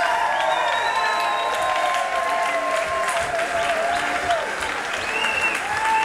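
Audience applauding, with voices calling out over the clapping.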